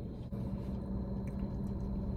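Steady low hum inside a parked car's cabin, with faint chewing and small mouth clicks.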